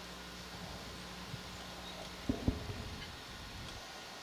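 Faint steady electrical hum on the dive's audio line, which cuts off a little past halfway, with two short low knocks at that point, typical of a microphone or intercom channel being handled or switched.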